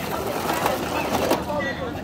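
King crab legs sliding off a foil tray into a pot of boiling water: clattering shells and splashing over the rolling boil, with a few sharp knocks in the middle.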